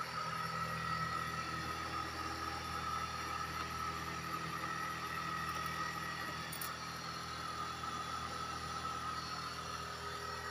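A steady, unchanging hum with a constant high-pitched whine over it.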